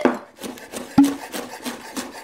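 Chef's knife chopping a rolled bundle of curly kale on a wooden cutting board: a quick, even run of strokes, with one louder knock on the board about halfway through.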